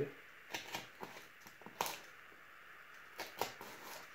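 Craft knife blade cutting into corrugated cardboard on a cutting mat: a handful of short scratchy clicks and scrapes, the sharpest a little under two seconds in.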